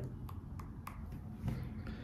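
A quiet pause in speech: low room tone with a few faint, scattered clicks.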